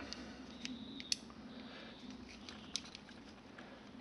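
Faint small metallic clicks and scrapes from a steel digital caliper being handled as its sliding jaw is moved by thumb, with two sharper clicks about a second in and near three seconds in.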